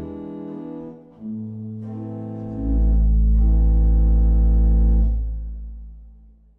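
Ratzmann pipe organ playing the closing chords alone: held chords change a few times, a deep pedal bass note comes in about two and a half seconds in and is the loudest part, and the final chord is released about five seconds in and dies away in the room's reverberation.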